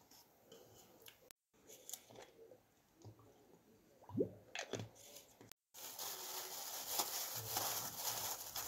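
Close-up food-prep sounds: soft taps and scrapes as canned tuna is knocked out of the tin into a plastic bowl, then a short pour of sauce from a bottle, with a rising pitch, which is the loudest moment. After a cut near the middle comes a steadier, louder crackle of gloved hands handling chopped peppers.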